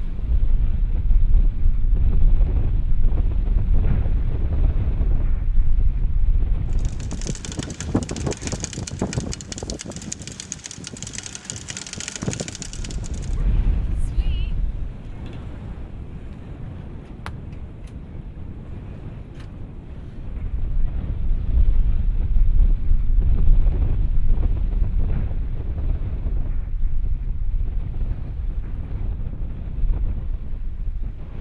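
Wind buffeting the microphone aboard a sailboat under sail, a heavy low rumble. From about seven to thirteen seconds in the rumble eases and a steady high hiss takes over, then the gusting rumble builds again near the end.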